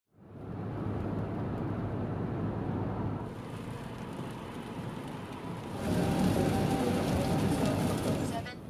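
Road noise from inside a car driving on a wet motorway: a steady rush of tyres on rain-soaked road that fades in at the start and grows louder about six seconds in, where background music comes in under it.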